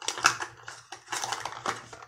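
Packaging rustling and crinkling as items in a box are handled close to the microphone: a quick run of irregular crackles with no steady rhythm.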